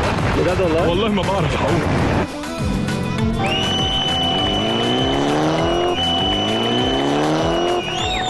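A voice over music for the first two seconds, then a drift car's engine revving up in two long rising sweeps. Over it, its tyres give a long, steady, high-pitched squeal as the car slides sideways.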